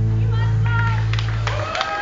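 A live band's final chord rings out on a held low note and cuts off near the end. High voices whoop from the audience and a few hands clap as the song ends.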